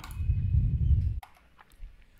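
A low, muffled rumble for about the first second, then a few faint computer clicks as the screen is switched.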